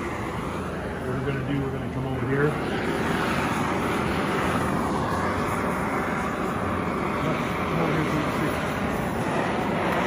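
Oxy-acetylene cutting torch flame burning with a steady hiss, held at an even level throughout.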